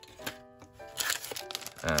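Thin plastic bag of dice crinkling in short crackles as it is lifted and handled, over background music with steady held notes.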